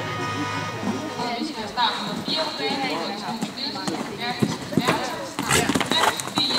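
A horse's hoofbeats on the arena footing, with a few sharp knocks late on, under background voices and music.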